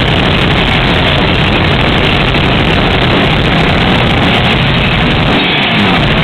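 Black metal band playing live: a loud, dense, unbroken wall of distorted guitar and drums.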